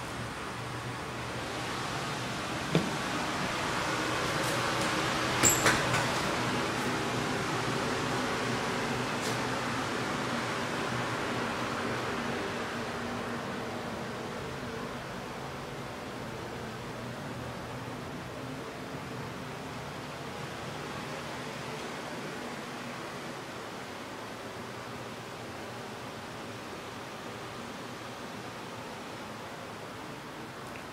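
Steady hiss with a low hum underneath, swelling a little over the first dozen seconds and then easing off. There is a sharp click about three seconds in and a quick pair of clicks about five and a half seconds in.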